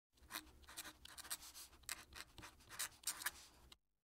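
Fountain pen nib writing cursive on paper: faint, irregular scratches, one for each stroke, stopping abruptly just before the end.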